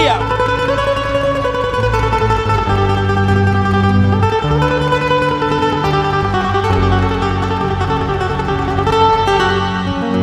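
Live band music with no singing: a guitar playing over a moving bass line.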